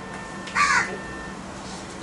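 A single short, harsh bird call, about half a second in, over faint room tone.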